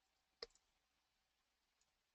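A single sharp computer mouse click about half a second in, with a couple of faint ticks just after, against near silence.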